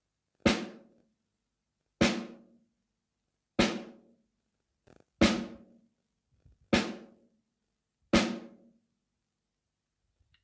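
Snare drum struck with drumsticks in slow single strokes, right and left hands alternating, as a demonstration of the single-stroke rudiment. Six even hits come about a second and a half apart, each ringing out briefly before the next.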